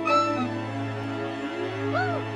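A gibbon calling over background music: two short calls that rise and then fall in pitch, one just after the start and one near the end, while the music holds steady notes underneath.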